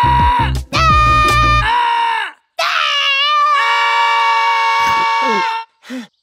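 Cartoon characters yelling as loud as they can in a loudness contest: one long held yell at a steady pitch over a pulsing low beat that stops about two seconds in, then after a brief gap a second long yell that wavers at first and is held for about three seconds.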